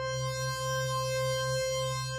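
A held software-synthesizer note, a steady low tone with a stack of bright overtones, played from a Roland A-49 MIDI keyboard while its modulation lever is worked.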